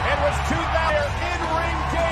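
Voices over background music, with a steady low drone underneath.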